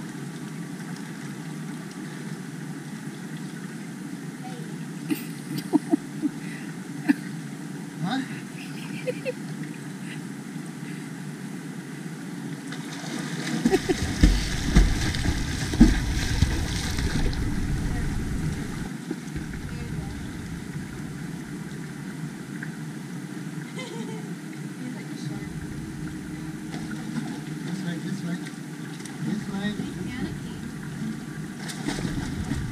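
Steady rush of flowing river water, with a few sharp ticks between about five and nine seconds in. About halfway through comes a louder stretch of splashing water with a low rumble, lasting a few seconds.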